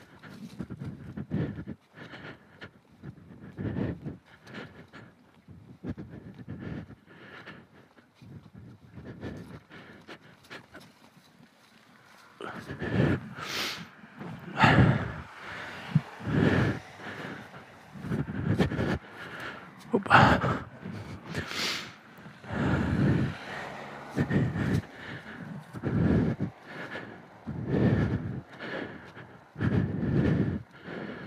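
A man breathing hard, panting in and out about every second and a half, faint at first and much louder from about twelve seconds in, from the effort of pushing a heavy motorcycle that has broken down.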